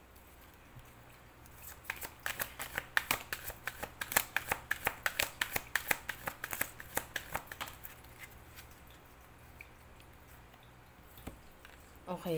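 A deck of oracle cards being shuffled by hand: a quick run of card-on-card flicks, about four a second, for several seconds, then quieter handling.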